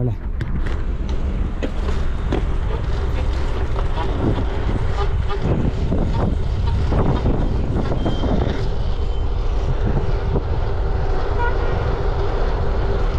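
Heavy wind rumble on an action camera's microphone as a bicycle is ridden fast along a city road, with road traffic around it.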